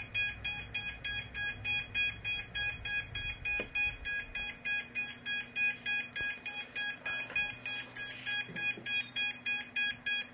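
Electronic beeper sounding a rapid, even string of short high beeps, about four a second.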